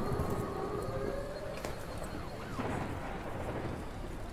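Cinematic trailer sound design: a low steady rumble under a slowly rising, wailing siren, with a sharp hit about one and a half seconds in.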